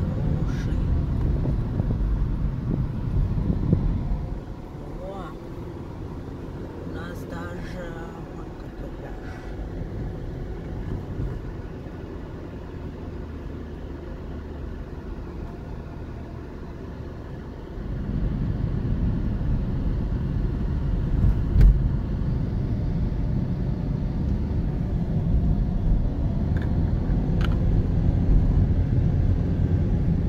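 Road and engine rumble heard inside the cabin of a Toyota Yaris being driven. It is louder for the first few seconds, drops noticeably for the middle stretch, and is loud again for the last third.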